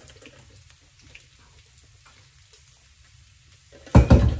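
Faint sizzling of bacon frying in a pan, with a few light crackles, then a sudden loud sound right at the end.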